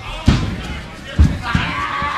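Two heavy thuds of wrestlers' bodies hitting the ring mat, about a second apart, as they scramble on the canvas.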